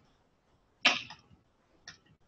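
Two short clicks: a sharp one a little under a second in that dies away quickly, and a fainter one near the end.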